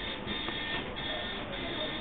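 Steady background noise with faint music playing underneath; no distinct knocks or clicks.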